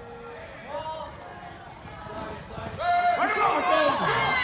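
Several people shouting from the sidelines during a football play, quiet at first, then swelling into loud overlapping yelling about three seconds in.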